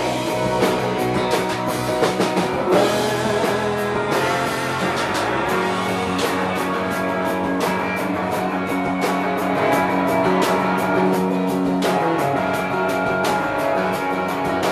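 Rock band playing live: electric guitars, bass and drums over a steady beat, mostly instrumental, with a sung line trailing off in the first few seconds.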